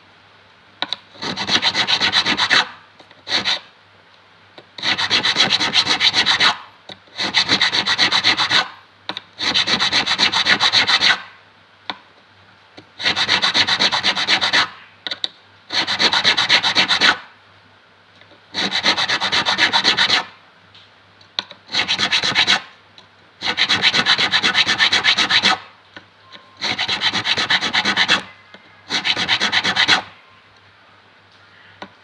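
Metal fret of an acoustic guitar being dressed with an abrasive stick rubbed rapidly back and forth along it. The rubbing comes in about a dozen bouts of a second or two, with short pauses between.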